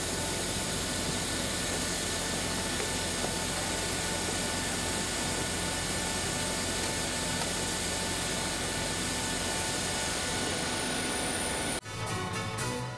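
Steady turbine whine and rushing noise from a jet aircraft running on the ramp, with a thin high-pitched whine over it. It cuts off abruptly near the end.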